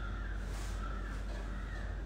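Harsh bird calls over a steady low hum.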